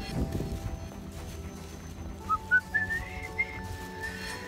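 A man whistling a short tune: a run of short high notes that climbs in pitch, starting about halfway in.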